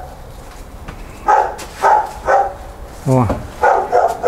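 Dogs barking in short, separate barks about half a second apart, starting just over a second in and getting louder near the end. The owner puts the barking down to the dogs not having been fed.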